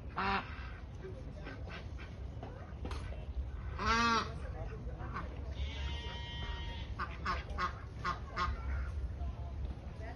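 Domestic geese and ducks calling: a run of short honks and quacks, the loudest a single honk about four seconds in, then a longer rasping call.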